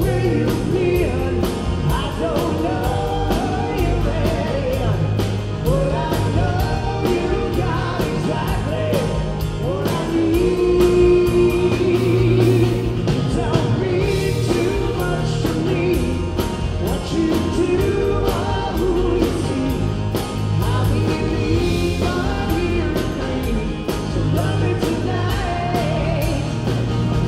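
Live rock band playing a song: singers over electric bass guitar and a drum kit, with a steady beat.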